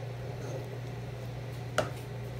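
Wooden spoon stirring thick milk soup in a pot, with a single sharp knock of the spoon near the end. A steady low hum runs underneath.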